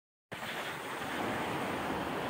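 Steady wind noise on the microphone mixed with the wash of surf on a beach, starting a moment in.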